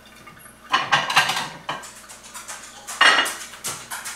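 Dishes clinking and clattering as they are taken out of a kitchen cabinet and handled at the counter: a cluster of clinks about a second in, and the loudest clatter about three seconds in.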